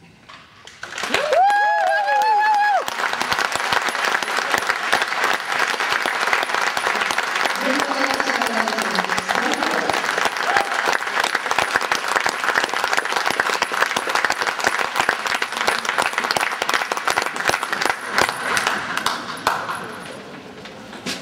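Audience bursting into applause about a second in and clapping steadily from then on. A loud, high cheer rises over the start of the applause, with another lower shout a few seconds later. This is the applause at the end of a percussion band's performance.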